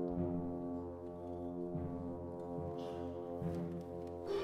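Brass band holding a quiet, sustained chord.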